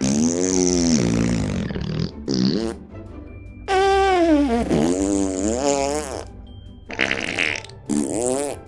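A man blowing long, buzzy raspberries with his tongue between his lips: one long one, a short one, then a second long one that starts higher, dips and rises in pitch before falling away, with a breathy burst near the end.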